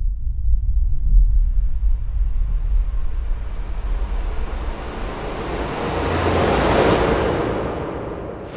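Logo-reveal sound effect: a deep rumble under a rushing noise that swells and brightens to a peak about seven seconds in, then fades near the end.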